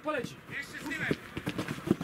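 Football players shouting across an outdoor pitch, with a few sharp thuds of boots striking the ball. The loudest thud comes near the end.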